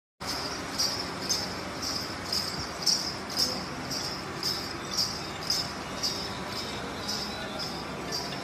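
Jingling metal percussion struck in a steady beat, about two strokes a second, over a background murmur of a crowd.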